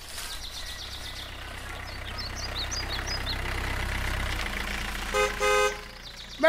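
A motor vehicle engine running with a steady low rumble that changes pitch partway through, birds chirping faintly, then two horn toots near the end, the second one longer. This is a produced sound-effect scene at the start of a reggae track.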